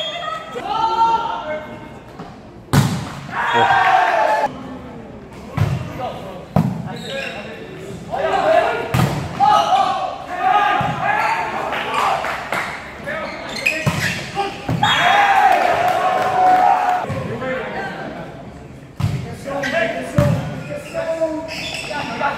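Volleyball being struck by hands and forearms in play: a string of sharp smacks a second or two apart, ringing in a large gym hall, with players' voices calling out between hits.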